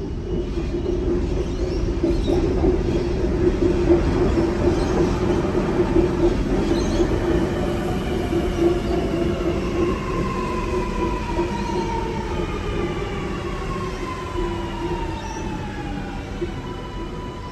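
Sydney Metro Alstom Metropolis train pulling into the platform: a steady rumble that swells over the first few seconds, then from about ten seconds in a motor whine falling in pitch as the train slows.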